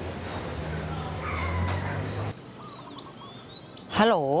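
A steady background of noise with a low hum that drops away suddenly a little past halfway, giving way to quieter outdoor ambience with a few short bird chirps near the end.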